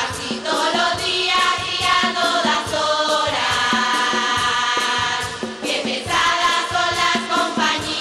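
A women's carnival murga chorus singing together in unison over a steady percussion beat.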